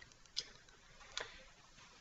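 Two faint short clicks, under a second apart, over quiet room tone.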